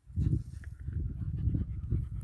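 A dog panting, over a low, uneven rumble.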